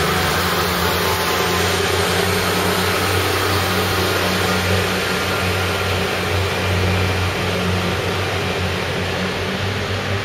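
Diesel multiple-unit train running along the platform: a steady low engine drone with a broad rumble, easing slightly near the end.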